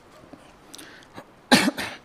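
A man coughs twice in quick succession into his hand, close to a microphone, about one and a half seconds in.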